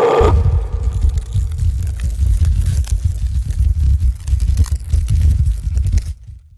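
A loud, uneven low rumble with faint crackles. It takes over when the song cuts off just after the start, and it begins to fade at the very end.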